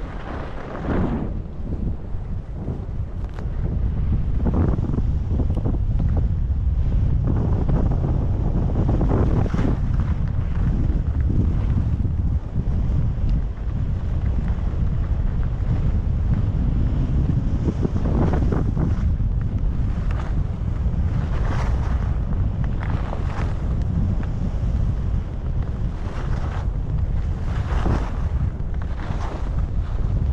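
Wind rushing over the microphone of a skier going downhill, a steady low rumble, with the skis scraping and hissing over packed snow in repeated short swishes, more often in the second half.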